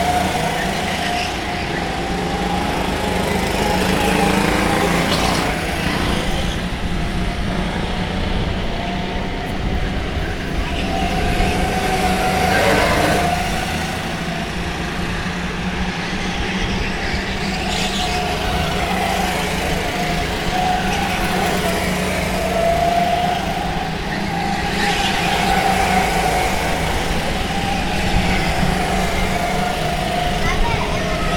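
Go-kart engines running at race pace, a buzzing engine note that rises and falls in pitch as the karts accelerate out of corners and lift for the turns.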